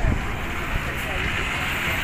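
Road traffic passing on a highway, a steady noise that swells through the middle, with wind rumbling on the microphone.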